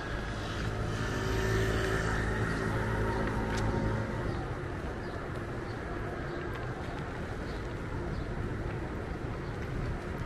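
A motor vehicle's engine humming as it passes on the road beside the path, loudest for the first few seconds and fading after about four seconds into steady street noise.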